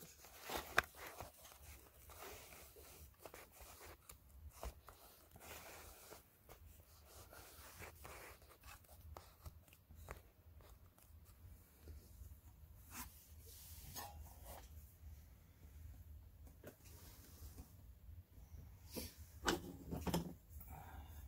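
Faint handling noise of hands moving craft items on a table: scattered soft clicks, taps and rustles over a steady low hum, with a sharper knock about a second in and a louder bump near the end.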